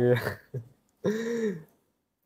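Speech only: a man's short "iya", then one brief voiced sound with a rising-and-falling pitch about a second in.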